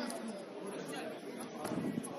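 Indistinct chatter of several voices at once, with no words standing out.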